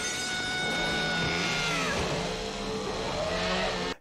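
Horror film soundtrack: music with a sustained high tone that slides down about halfway through, over a steady low drone.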